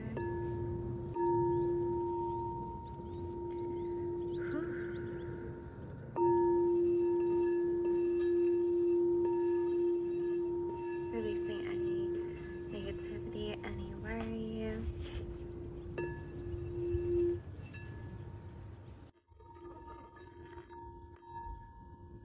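Hot pink heart chakra singing bowl ringing with one strong steady low tone and fainter higher overtones as a wand is run around it. The tone swells suddenly twice, about a second in and again about six seconds in, then is stopped abruptly about seventeen seconds in, and a faint ring returns near the end.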